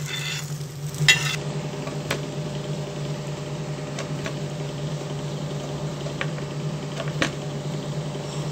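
Steel ladle scraping and stirring scrambled egg on an iron tawa, a couple of sharp scrapes in the first second and a half. After that, a steady low hum with a few faint taps.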